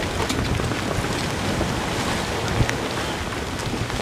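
Strong wind and rain on an open boat deck in a storm: a steady rushing noise with wind buffeting the microphone and scattered spatters of raindrops.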